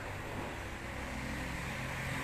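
Low, steady hum of room background in a quiet gap between speech.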